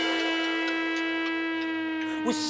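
Dubstep track breaking down to a single sustained synth note with no beat, held steady and sagging slightly in pitch.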